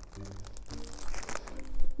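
Packaging crinkling and rustling as an item is pulled from the box, getting louder near the end.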